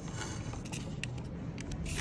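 Paper roll being loaded into a thermal receipt printer by hand: rustling of the receipt paper and a few light plastic clicks from the printer mechanism, over a steady low background rumble.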